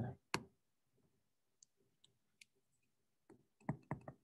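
Quiet clicks and taps of a pen stylus on a tablet screen during handwriting: one sharp click just after the start, a few faint ticks, then a quick run of clicks near the end.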